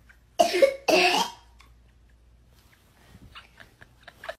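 A toddler coughs twice in quick succession, a gagging reaction to sniffing someone's feet. Faint giggling follows near the end.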